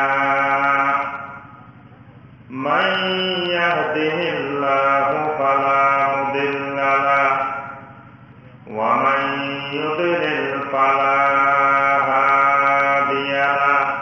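A man chanting unaccompanied in long, drawn-out melodic phrases, each held for several seconds. He breaks off briefly about two seconds in and again about eight seconds in.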